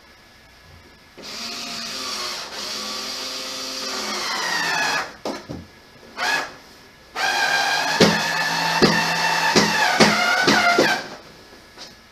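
Power drill driving screws during assembly of a toddler table: two runs of several seconds with a short burst between them. The first run drops in pitch as it slows, and the second ends with a few sharp clicks.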